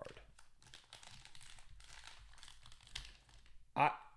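Foil trading-card pack wrapper crinkling as it is handled and the cards are slid out, a run of faint crackles.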